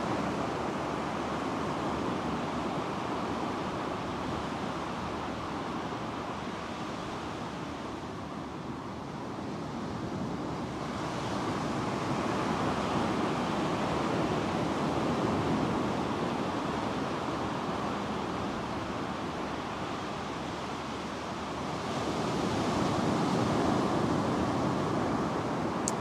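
Ocean surf breaking and washing up onto a sandy beach: a steady rush that swells about eleven seconds in and again near the end.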